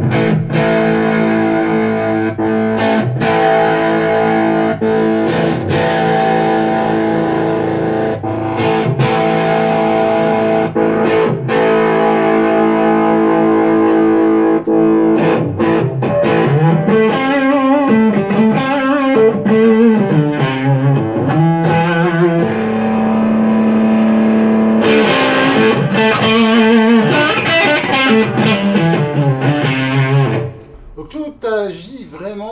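Electric guitar played through a Marshall Code 25 modelling amp set to an overdriven 50's British preamp, a British Class A EL84 power amp and a Marshall 4x12 cabinet model. Held chords ring for about the first fifteen seconds, then a lead line with bends and vibrato, another held chord, and a brighter passage near the end as the presence control is turned up.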